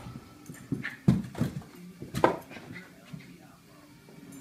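Small dog barking: a few short, sharp barks, the loudest about a second in and another just after two seconds.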